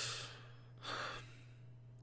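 A man's quiet breathy laugh: a sigh-like exhale at the start, then a second shorter breath about a second in.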